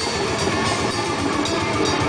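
Technical death metal band playing live: distorted guitars over rapid, dense drumming, with no break.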